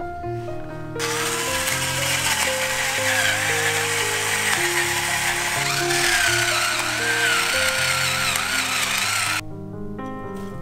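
Handheld kitchen blowtorch flame burning with a loud, steady hiss over cubed butter in a glass bowl, starting about a second in and cutting off suddenly shortly before the end. Background music plays throughout.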